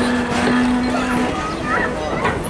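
Indistinct voices of people around, with a steady low hum that cuts off about a second in.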